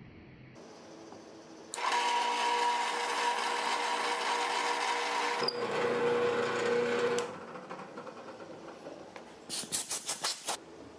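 Drill press running with a steady whine, boring a hole in a wooden block with a tape-marked drill bit; its note changes partway through. It stops about three-quarters of the way in, and a few sharp knocks follow near the end.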